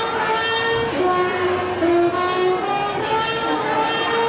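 Music playing loudly over the sound system: a slow melody of held notes that step up and down in pitch, with rich overtones.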